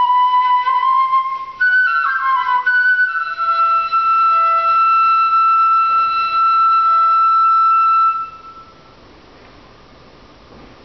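Shinobue, a Japanese bamboo transverse flute, playing a slow solo melody: a held note, a brief break, a few quick ornamented higher notes, then one long held note that ends about eight seconds in.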